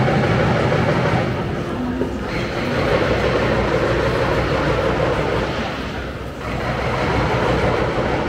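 A train running past with a loud, steady rumble that dips briefly twice and eases off near the end.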